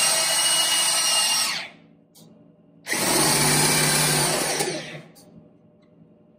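Home-made power lift on a round-column milling machine: an industrial electric drill motor housed on the mill head, driving the head up or down. It runs with a steady high whine until nearly two seconds in, stops, then runs again for about two seconds starting about three seconds in.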